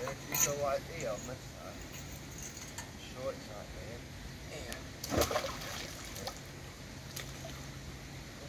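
Indistinct talk, and about five seconds in a sudden splash as a fishing magnet on its rope drops into the canal water.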